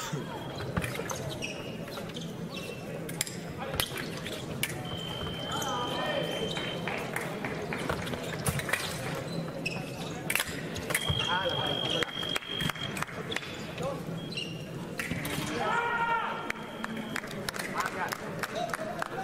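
Foil fencing bout: frequent sharp clicks and taps from the blades and the fencers' footwork, with an electric scoring machine's steady high beep sounding twice, for about two seconds each, about five seconds in and about eleven seconds in. Shouting voices come up after each beep.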